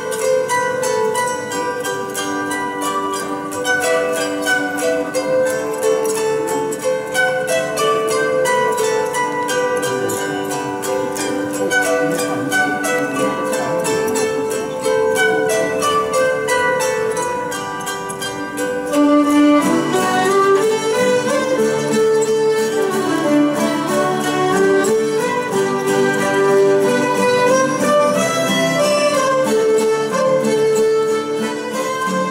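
Table zither picked with a thumb ring, playing a plucked Latvian folk melody. About two-thirds of the way through, bowed fiddles and the rest of the string band join in and the sound fills out with lower, sustained tones.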